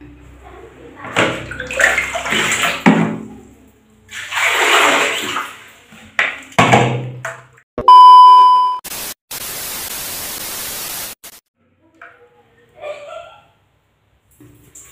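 A loud, steady test-tone beep of about a second, followed by two seconds of TV static hiss that cuts off sharply: a colour-bar glitch transition effect. Before it come two swells of rushing noise.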